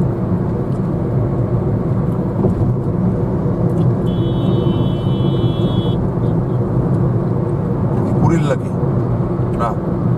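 Steady road and engine noise heard inside a moving car's cabin. A high steady tone sounds for about two seconds midway, and short rising sounds come near the end.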